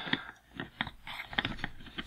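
Faint, scattered clicks and taps of small hard plastic parts being handled: the flip-up steering column of a G.I. Joe Cobra BUGG toy ski boat is folded down on its hinge.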